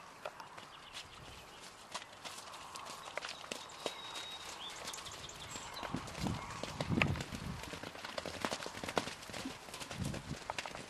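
Horses' hooves on soft pasture ground as horses move about and one trots or canters past. A run of louder, deeper hoofbeats comes about six to seven seconds in.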